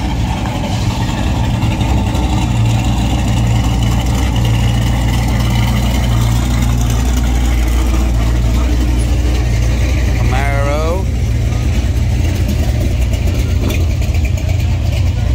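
Classic muscle car engine idling with a deep, steady low note as the car creeps past at parade pace, growing louder a couple of seconds in as it nears. A person's voice calls out briefly about ten seconds in.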